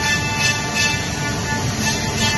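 Masterwood Project 416L CNC machining center's milling spindle running steadily as it cuts a wood panel: a steady high whine over a noisy rumble. Background music plays along with it.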